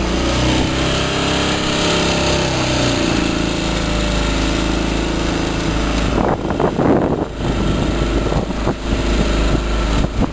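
Small outboard motor running steadily on a sailing catamaran, with wind buffeting the microphone, heavier and gustier from about six seconds in.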